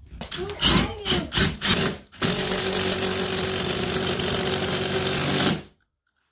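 Red Milwaukee FUEL cordless impact driver hammering a mounting bolt through a TV wall-mount plate into the wall. It runs loud and steady for about three and a half seconds, starting about two seconds in and cutting off suddenly near the end.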